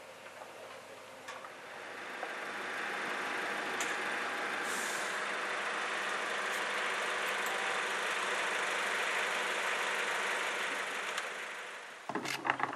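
A steady mechanical engine sound with a strong hiss. It swells in over a couple of seconds, holds level, then fades near the end.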